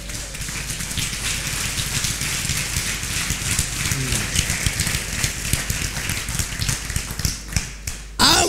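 Congregation applauding, a dense patter of clapping that thins out and stops just before the end.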